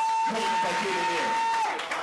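A high, clear, steady tone held for about two seconds, gliding up at its start and down as it cuts off near the end, over a man's speech.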